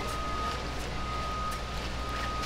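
Steady background hum with a faint, thin steady tone above it, and no distinct event standing out.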